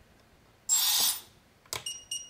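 A short hiss about two-thirds of a second in, then a click, then the quadcopter flight controller's buzzer starts beeping in short high tones near the end. The beeping is the sign that the beeper mode has been switched on from the radio's auxiliary switch.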